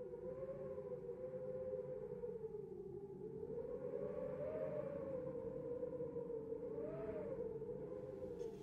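Ambient soundtrack drone: one sustained tone that slowly wavers up and down in pitch, with a faint higher overtone, over a low rumble.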